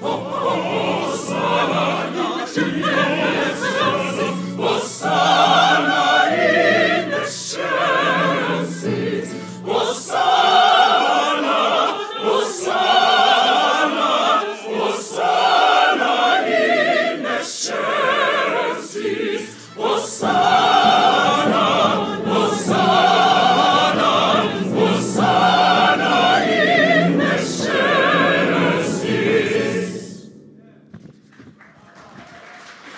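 Large mixed choir singing a choral Mass movement with orchestral accompaniment, full voices held on long notes with vibrato.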